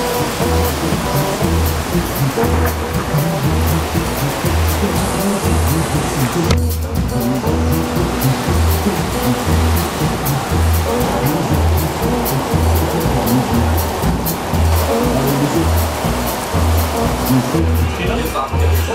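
Live rock 'n' roll band playing loudly, with a steady low drum-and-bass beat about twice a second and a brief dip in the sound about six and a half seconds in.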